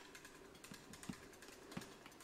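Faint, scattered clicks and taps of small plastic action-figure parts being handled, with a couple of soft knocks.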